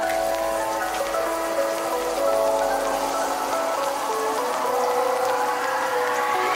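Background music of held chords, with a rising sweep near the end, over a steady crackling sizzle of spice paste frying in oil in a wok.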